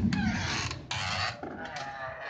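Handling noise from a phone camera being moved: rustling with several sharp clicks and knocks, growing fainter toward the end.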